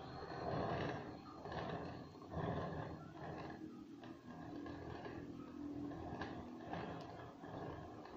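Soft rough scraping and rubbing of a metal palette knife spreading whipped cream over a cake, with the plate and cake board shifting as the cake is turned, coming in uneven swells about a second apart.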